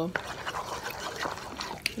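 A fork stirring and mashing moist tuna salad in a bowl: a soft, wet mixing noise with a couple of faint taps of the fork.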